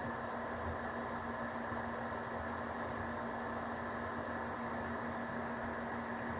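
Steady room noise from an open microphone: an even hiss with a constant low hum, no change in level.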